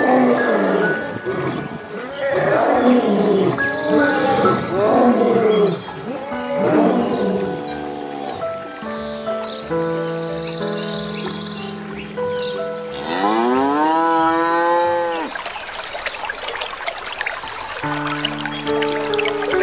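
Lion growls and roars over background music through the first several seconds, then music alone. Near the end, a cow gives one long moo that rises and falls in pitch, with the music continuing.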